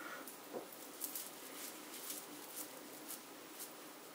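Faint scattered soft clicks and rustles of a makeup-remover wipe being handled and rubbed on the skin to lift hair-dye stains.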